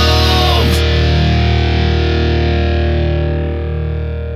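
Final chord of a rock song: distorted electric guitar and bass hold one chord and let it ring, slowly fading out. The last sung note and the bright top end stop under a second in.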